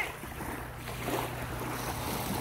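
Small lake waves lapping at a shallow shoreline, with wind rumbling on the microphone.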